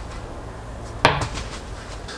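A heavy metal block is set down on a doormat, giving one knock with a brief ring about a second in, over a steady low background rumble.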